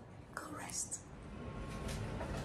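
A brief, faint whisper from a woman, followed by a low steady background hum.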